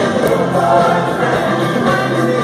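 Live rock band playing with singing, heard from the stands of a large arena.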